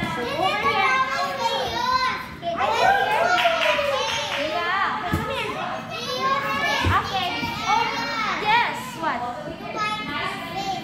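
Young children's voices chattering and calling out as they play, almost without a break, with a couple of short thumps about five and seven seconds in.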